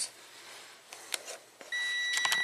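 Digital multimeter (AstroAI DT132A): a couple of light clicks as its rotary dial is handled, then near the end a steady, high single-pitched electronic beep starts.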